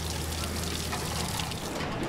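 Water pouring and splashing in many streams off a concrete stadium deck onto wet pavement: runoff from hosing down the seats. A low steady hum runs underneath and stops near the end.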